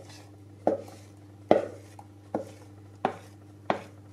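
Wooden spatula knocking and scraping in a plastic mixing bowl as cake batter is worked out: five sharp knocks, about one every three-quarters of a second, over a low steady hum.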